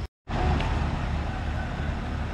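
Steady low rumble with a light hiss, after a momentary dropout right at the start.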